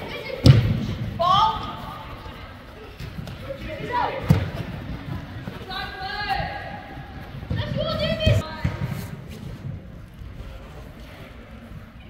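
Soccer ball kicked on artificial turf in a large hall: dull thumps about half a second in, again around four seconds and around eight seconds. Shouting voices echo in between.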